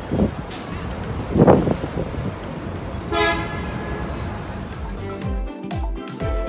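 City street traffic heard from the open top deck of a tour bus, with a brief low rumble about a second and a half in and a short vehicle horn toot about three seconds in. Music with a beating bass starts near the end.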